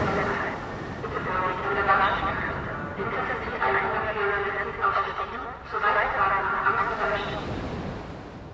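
A voice played back through speaker-simulation processing with distortion, heard as garbled speech over steady background noise.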